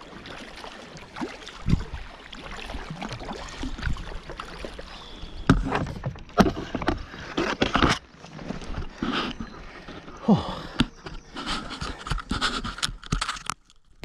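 Double-bladed kayak paddle dipping and splashing in river water, stroke after stroke, at an irregular pace, with a few knocks and scrapes against the plastic kayak.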